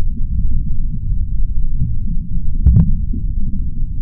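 A loud, muffled low rumble with no clear beat, laid over the pictures as the soundtrack. About three-quarters of the way through there is one brief, sharper knock.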